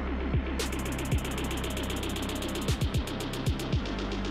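Electronic background music with a steady beat: deep bass hits that drop in pitch, and quick hi-hat ticks coming in about half a second in.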